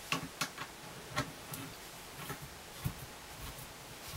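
Faint, irregular clicks and ticks of metal pipe fittings as a half-inch pipe nipple is turned by hand onto a gas-line tee.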